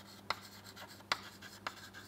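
White chalk writing on a green chalkboard: a handful of short, sharp taps and strokes, roughly one every half second.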